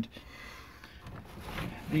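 A pause in a man's speech, filled only by faint room noise, with his voice at the very start and again at the end.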